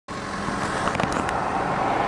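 Car engine and road rumble heard from inside the cabin, with a few light clicks about a second in.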